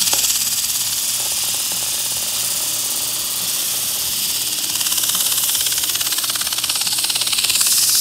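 Fedders fan motor running with sandpaper held against its spinning shaft: a steady, loud abrasive hiss over a faint motor hum, swelling slightly near the end, as the surface rust is sanded off the shaft.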